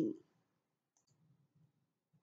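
Near silence: a pause in a woman's narration, with a faint click about a second in.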